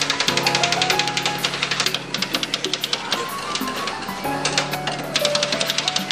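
Background music with steady sustained notes. Over it, a metal spatula taps rapidly on a frozen steel plate, chopping ice cream for rolled ice cream, in two bursts: one for the first couple of seconds and one near the end.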